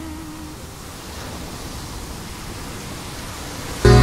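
A steady, even rushing noise with no rhythm or pitch as the music fades away. Loud music with a heavy bass cuts back in just before the end.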